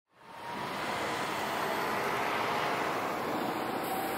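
A steady rushing noise that fades in over the first half second and then holds even, with a faint high thin tone running through it.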